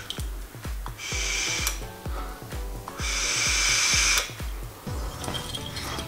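A person drawing on a Fumytech EZipe vape and blowing out the vapour: a short breathy draw about a second in, then a longer exhale about three seconds in. Background music with a steady beat runs underneath.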